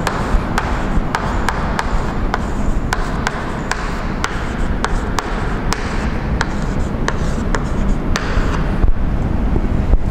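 Chalk writing on a blackboard: scratchy strokes with frequent sharp taps as characters and brackets are written, over a steady low background rumble.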